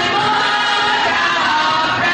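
Choir of girls singing together, holding long sustained notes.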